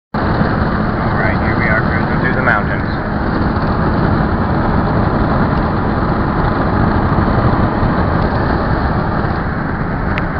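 Steady road and wind noise inside a car cabin at highway speed.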